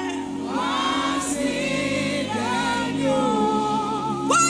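Live gospel worship singing: a female lead voice holds long, sliding notes, with many voices singing along over a steady musical backing.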